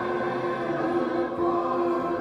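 Voices singing a gospel hymn, holding long steady notes.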